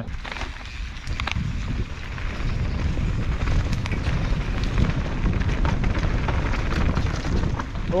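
Mountain bike running fast down a dirt forest trail, heard from a bar- or helmet-mounted camera: a steady wind rumble on the microphone over tyre noise, with scattered clicks and rattles from the bike. A rider shouts just at the end.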